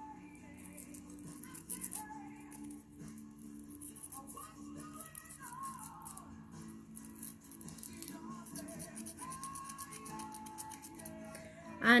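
Sandpaper rubbing back and forth on a sewing machine's steel needle plate in quick, fine scratching strokes, smoothing away the indentations and burrs left by the needle striking it, which were catching the thread. Soft background music with sustained notes plays throughout.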